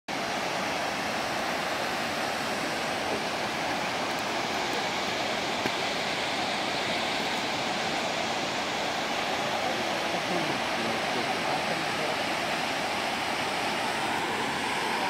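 Ouzoud Falls, a tall multi-tier waterfall with a lower cascade, pouring steadily: an unbroken rush of falling water.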